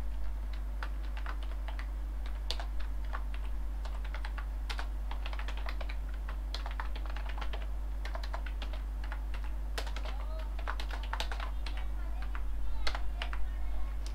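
Typing on a computer keyboard: irregular runs of keystroke clicks over a steady low hum.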